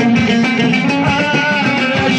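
Moroccan chaabi watra music: an amplified loutar plays a fast plucked melody over steady hand-drum strokes from frame drums.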